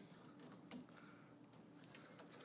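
Near silence with a few faint clicks of a plastic wiring connector being handled and pushed together.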